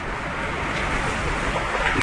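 Steady hiss of room and recording noise with no distinct events, swelling slightly louder through the pause.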